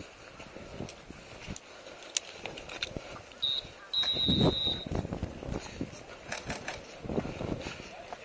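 Distant voices and footfalls on dirt, with scattered light clicks. About three and a half seconds in, a short high-pitched beep is followed by a longer one of about a second.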